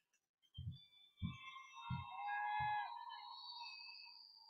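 Footsteps on a stage floor: four soft low thumps about two-thirds of a second apart. Faint high-pitched cheering or whistling from the audience runs under and after them.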